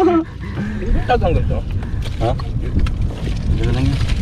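Brief snatches of men's voices over a steady low rumble.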